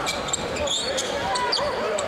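Live basketball game sound: a ball bouncing on the court, with a steady background of many overlapping voices from the arena.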